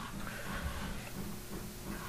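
Faint steady background noise of a voice-over microphone: low hiss with a steady low hum, and no distinct events.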